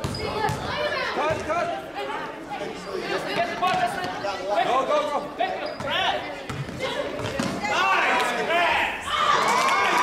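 Basketball bouncing on a gym floor during play, with several voices calling out at once in the echoing hall, louder in the last couple of seconds.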